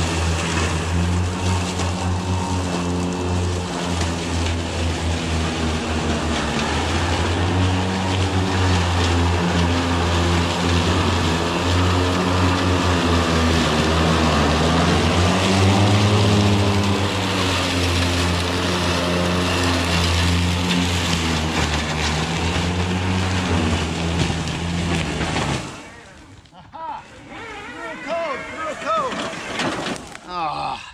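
Ego Z6 battery-powered zero-turn mower's electric blade motors running steadily while cutting through thick, tall wet grass and brush: a low hum under a broad whirring hiss. Near the end the sound cuts off suddenly as the blades stop on an obstruction fault code.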